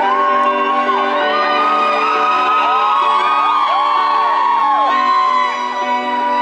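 Live rock band music played loud, heard from right in front of a large PA speaker: sustained chords under long held vocal notes. Many voices whoop and sing along in rising and falling arcs over it.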